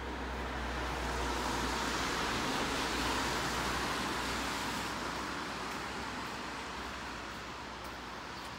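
A car passing by on a wet street: its tyre noise swells to a peak about three seconds in, then fades away.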